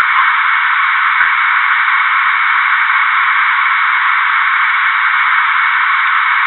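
Steady, narrow-band hiss of a reconstructed cockpit voice recorder track, like radio static, with a faint click about a second in.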